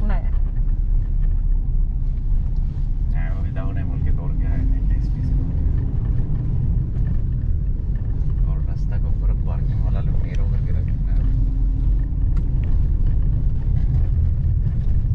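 Suzuki Ignis hatchback's engine and tyre noise heard from inside the cabin as it climbs a hill: a steady low rumble.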